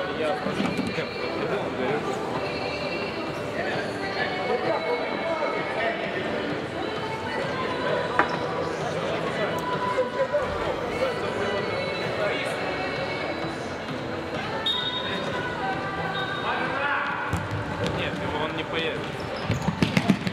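Indistinct voices of players and spectators echoing in a sports hall, with a few thuds of a futsal ball on the hard court.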